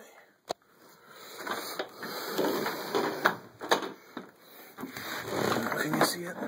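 Handling noise from a bagless upright vacuum cleaner that is switched off: a sharp plastic click about half a second in, then rustling and knocks as it is tilted and moved about.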